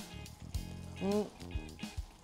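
Soft background music with steady held tones, and a short vocal sound from a man about a second in.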